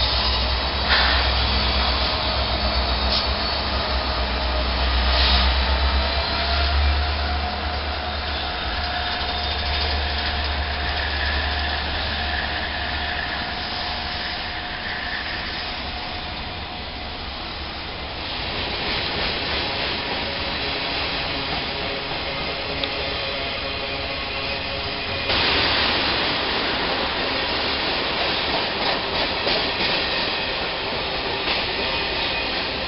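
Norfolk Southern diesel freight train passing close by: the locomotives' engines give a deep rumble for the first dozen seconds, then the freight cars roll past with steady wheel-and-rail noise and a faint high whine. About 25 seconds in the sound changes abruptly to a louder, hissier rolling of another train's freight cars.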